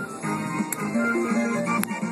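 Mr. Cashman African Dusk slot machine playing its electronic bonus jingle during free spins, while the win meter counts up and the reels start the next spin, with two short clicks.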